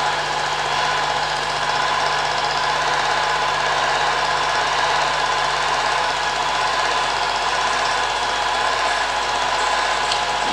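Cine film projector running steadily, its motor and film-advance mechanism making an even mechanical whirr with a faint steady hum.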